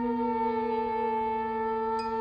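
Free-improvised music from a quartet of soprano saxophone, voices, guitar and double bass: long held notes overlapping, a low note steady beneath higher ones that slide slightly down in pitch.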